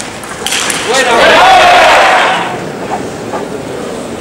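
Table tennis ball struck on the bats with sharp clicks about half a second in. A loud burst of shouting and cheering in the hall follows about a second in, lasts roughly a second and a half, then dies away.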